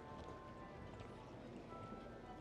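Footsteps on asphalt, faint against the open-air hubbub, with quiet music playing in the background.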